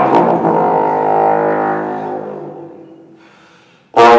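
Bass trombone holding one long low note that slowly fades away over about three seconds, then a loud new note attacked just before the end.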